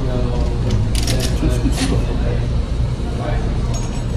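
Metal clicks and clinks of a shield's steel clamp arm being handled and fitted, clustered about one to two seconds in, amid low voices and a steady low room hum.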